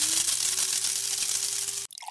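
Sound-effect whoosh for an animated title sequence: a loud hiss with a faint tone that rises, then holds, and cuts off suddenly near the end.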